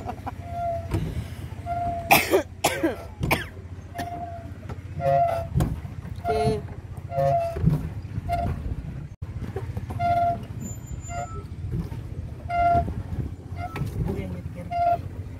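Pedal boat being pedalled: short squeaks at an uneven pace, very roughly one a second, over a steady low rumble. A few loud sharp noises come about two seconds in.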